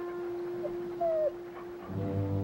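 Canine whimpering: short high whines that fall in pitch, the clearest about halfway through, over a long steady held tone. Low bowed strings come in near the end.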